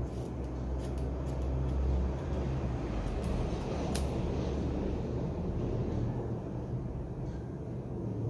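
A steady low rumble, swelling briefly about a second or two in, with a few faint sharp snips of scissors cutting hair.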